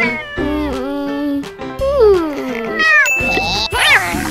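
A domestic cat meowing several times, the calls bending and falling in pitch, over background music, with a short hiss near the end.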